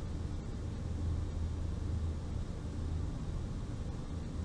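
Steady low background hum with a faint hiss, unchanging throughout; no marker strokes or other distinct sounds.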